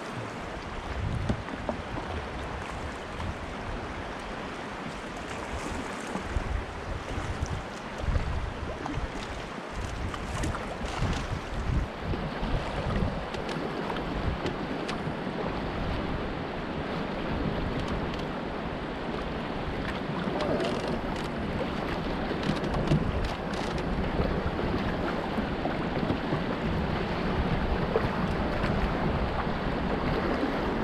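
River current rushing and splashing around a moving open canoe, with wind buffeting the microphone in gusts; the water grows a little louder in the second half.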